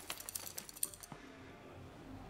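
Faint scattered clicks and ticks over quiet room tone for about the first second, then only the faint room tone.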